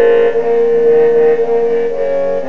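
Trombone music: a long note held high over lower sustained parts, fading near the end.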